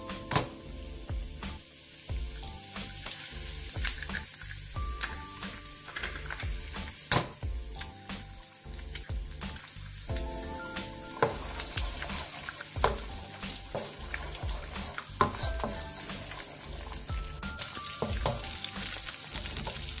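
Eggs frying in hot oil with chopped ginger and garlic in a wok, sizzling steadily, with scattered sharp taps. Later on, a wooden spatula scrapes and stirs as the eggs are scrambled.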